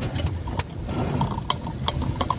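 Inside a car driving through heavy rain: a steady low rumble of engine and tyres on the wet road, with irregular sharp ticks of raindrops striking the windscreen.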